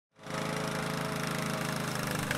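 A petrol walk-behind lawn mower engine running at a steady speed, coming in right at the start.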